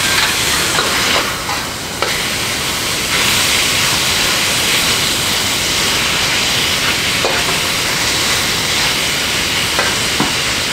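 Chicken strips sizzling loudly in a screaming-hot wok as a metal spatula stirs and tosses them, with a few sharp clicks and scrapes of the spatula against the wok.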